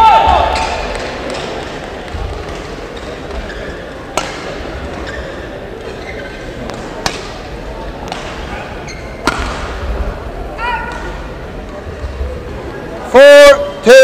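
Badminton rally: a shuttlecock struck by rackets, with sharp cracks about four, seven and nine seconds in, and brief squeaks of shoes on the court floor. The rally ends with a loud, short shout near the end.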